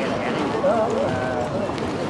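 Hoofbeats and carriage wheels of a four-horse driving team moving at speed on soft arena footing, under a steady murmur of a large indoor crowd.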